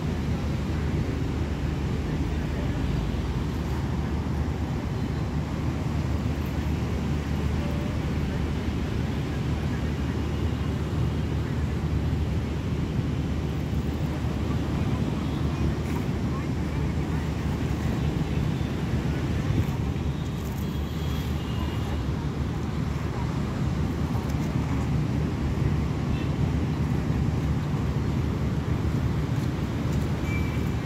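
Steady low outdoor rumble with a faint underlying hum.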